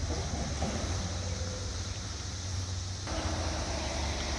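Steady droning chorus of periodical 17-year cicadas, with a low steady rumble underneath. Part of the hiss drops away about three seconds in.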